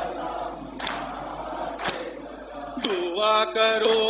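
Mourners beating their chests in unison in matam, about one stroke a second, under a haze of congregational chanting. About three seconds in, a lone male voice starts singing the next line of the noha in long held notes.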